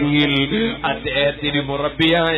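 A man's voice chanting in a drawn-out, sing-song recitation, with long held notes.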